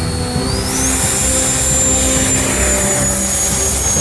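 Radio-controlled model F-16 jet's engine at takeoff power: a high whine that rises sharply in pitch about half a second in, then holds high with a rushing hiss as the model accelerates down the runway and lifts off.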